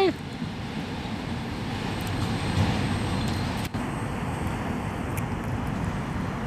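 Steady low rumble of distant city traffic.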